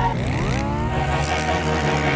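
An engine revving up quickly for about a second, then holding its speed, over background music.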